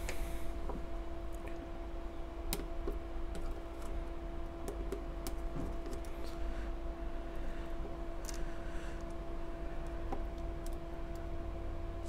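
Scattered light clicks and taps of hands and a small screwdriver handling parts and wires on a circuit board while a zener diode is swapped out, over a steady electrical hum.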